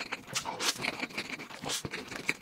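Close-miked eating sounds: wet chewing and mouth clicks as a fried, crumb-coated piece of food is bitten into, with a few louder bites or crunches about half a second in and near the end.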